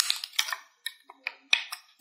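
Petals cut from a thin plastic bottle being bent outward by hand, giving a string of short, sharp plastic clicks and crackles at irregular intervals.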